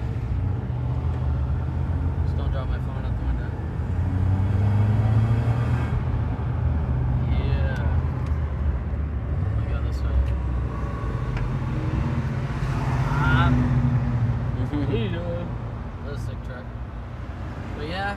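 In-cabin drone of a 1993 Mazda Miata's four-cylinder engine and resonator-deleted exhaust while driving, with road and tyre noise. The drone swells louder about four to six seconds in and again near the middle.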